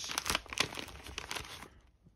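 Crinkly packaging being handled as two sticker packs are pulled out of an advent calendar pouch, a dense crackle of rustles that dies away near the end.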